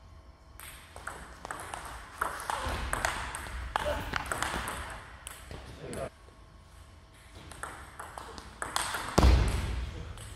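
Table tennis rally: the celluloid-type ball clicking off paddles and the table in quick, uneven strokes, with voices in the hall. A loud burst comes near the end.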